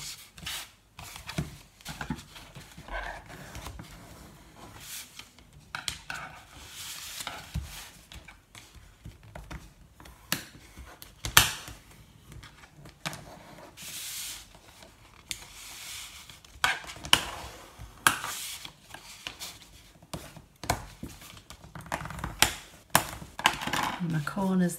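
Card stock being folded and pressed down on a wooden tabletop: on-and-off rustling and rubbing of card under the hands and a bone folder, with scattered sharp taps.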